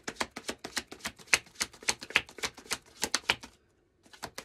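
A deck of tarot cards being shuffled by hand: a fast, even run of card snaps, about seven a second, that stops half a second before the end.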